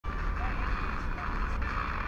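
Sony Ericsson phone's FM radio playing hiss from its small loudspeaker while tuned between stations, with no clear station coming through; the hiss changes about one and a half seconds in as the tuner steps from 87.5 to 87.6 MHz. A low rumble of wind on the microphone runs underneath.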